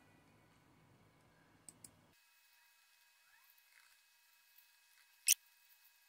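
Faint computer mouse clicks: a quick double click about two seconds in and a single sharper click near the end, over a faint low hum that cuts off suddenly about two seconds in.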